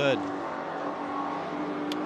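Steady drone of race-car engines running, with no sudden events.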